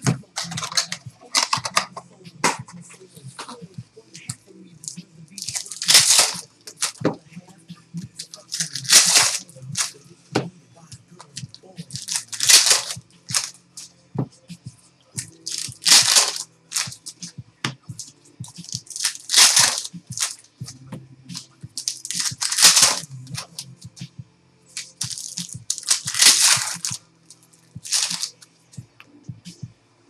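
Foil trading-card packs being torn open one after another: about seven loud rips, roughly every three to four seconds, with small clicks and rustles of card handling between them.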